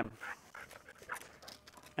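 A dog panting faintly, in short irregular breaths.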